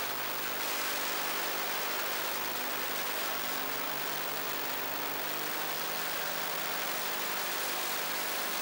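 Autograss Junior Special racing car's engine running under power at a fairly steady note, heard from an onboard camera on the car and largely buried under a heavy, even hiss of wind and road noise.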